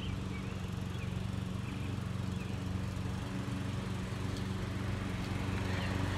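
A steady low motor hum with a haze of outdoor noise.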